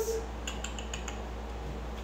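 Cat claws ticking on a hardwood floor: a few light, quick clicks about half a second to a second in.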